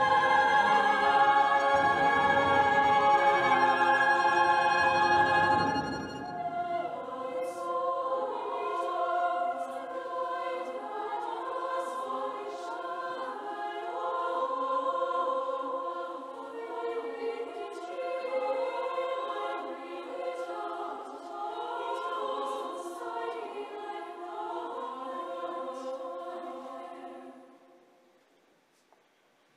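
Youth choir singing: a loud, full passage with a deep low end for about six seconds, then the low end drops away and the choir goes on softly in slow, shifting, overlapping lines, fading out near the end.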